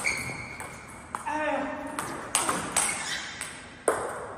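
Table tennis rally: the celluloid-type plastic ball clicking sharply off the rackets, one faced with Pinyi Tsunami rubber, and off the table, about five hits at uneven intervals of a fraction of a second to a second.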